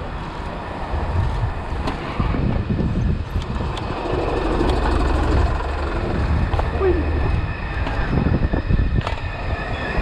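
Steady low rumble of wind buffeting the microphone over the tyre noise of a Gios FRX mountain bike rolling on the street, ridden on its back wheel in a wheelie.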